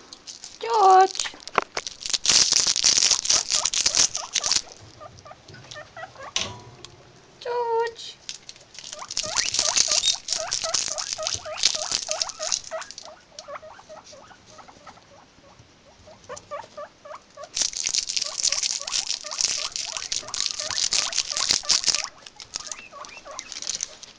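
Guinea pigs rustling through hay and wood-shaving bedding in their cage, in three long bursts. Two short squeals fall in pitch near the start, and long runs of short, rapid squeaks follow through the second half.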